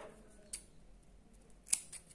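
Scissors cutting a flat elastic band: a faint click about half a second in and a louder, sharp snip near the end.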